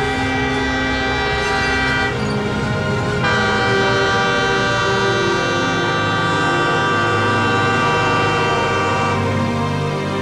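Train horn sounding in a long sustained blast as a locomotive approaches, growing louder about three seconds in and thinning near the end.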